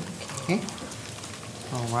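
A lull in speech with a low even hiss of microphone and room noise, broken by a short vocal sound about half a second in; a voice starts again near the end.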